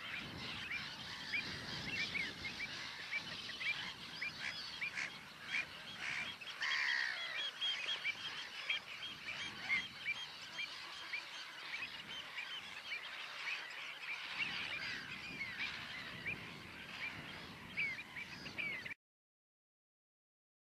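A colony of seabirds calling together: a dense, continuous stream of short, repeated calls, with one louder falling call about seven seconds in. The sound cuts off abruptly about a second before the end.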